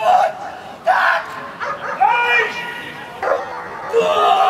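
Short, loud shouts from a protection-sport helper, about one a second, as he threatens and drives a German Shepherd gripping his padded sleeve; one call in the middle rises and falls in pitch. Dog vocal sounds may be mixed in.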